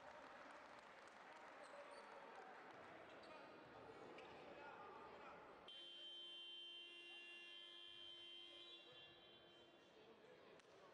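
Faint indoor basketball-game ambience: crowd chatter with a basketball bouncing on the hardwood court. From about six seconds in a steady high tone sounds for about three seconds, then fades.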